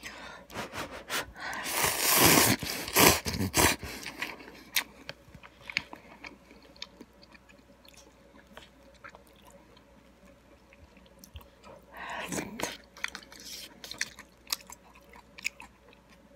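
A person slurping instant ramen noodles, loudly for about two seconds near the start, then chewing with small wet mouth clicks. A second, shorter slurp comes about twelve seconds in.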